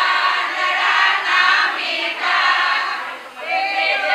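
A group of women singing together.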